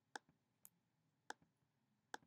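Three sharp, quiet clicks of a computer mouse button about half a second apart, two of them followed by a fainter release click.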